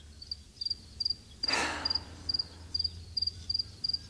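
Cricket chirping as a comedy sound effect, about ten short double chirps at an even pace: the cue for an awkward silence while a high five goes unreturned. A brief rush of noise comes about a third of the way in.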